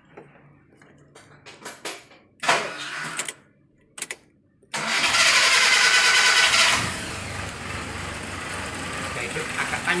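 Suzuki Katana (Jimny) four-cylinder petrol engine started again about halfway through: it catches and runs loud for a couple of seconds, then settles into a steady run. The ignition timing is still being set at the distributor after a timing-belt replacement, and the engine had stalled just before.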